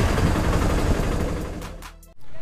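Auto-rickshaw ride noise: the three-wheeler's engine running with road and wind noise, fading out near the end.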